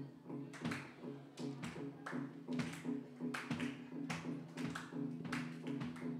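Live band playing a worship song, with electric guitar and bass guitar holding sustained chords under a steady beat of sharp hits about twice a second.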